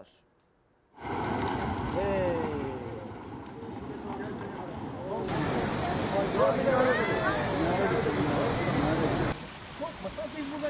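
Rushing floodwater, a steady heavy rush of a muddy torrent, starting about a second in, with people's voices calling over it.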